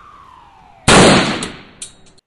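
Ambulance siren sound effect falling in pitch, cut off a little under a second in by a loud rifle shot that dies away over about half a second, then a short sharp crack near the end.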